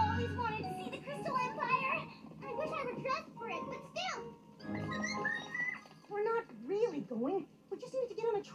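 Cartoon soundtrack played on a TV and picked up in the room: high, childlike character voices and vocal sounds over light background music.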